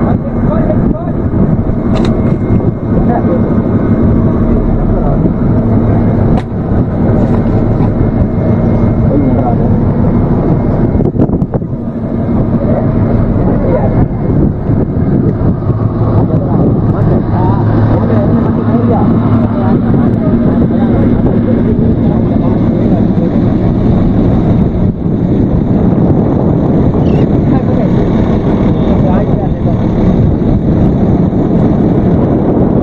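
Fishing boat's engine running with a steady low drone, and men's voices talking indistinctly over it.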